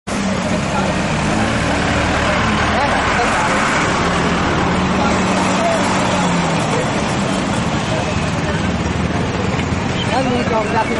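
A heavy vehicle's engine running steadily with a low hum, while a crowd of people talk around it.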